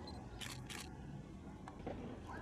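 Camera shutter clicks: two quick clicks about half a second in, and fainter clicks near the end.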